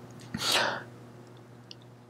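A man's quick, sharp breath: a single short breathy burst of about half a second, near the start.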